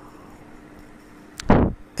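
Faint steady hiss and low hum of room noise. Near the end there is a sharp click, then a loud, short thump.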